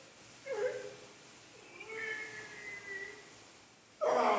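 Two pitched vocal sounds: a short one about half a second in, then a longer, drawn-out one from about two seconds to past three seconds.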